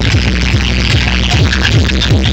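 Loud electronic dance music played through a large DJ sound system, with heavy bass and deep kick-drum thumps repeating several times a second.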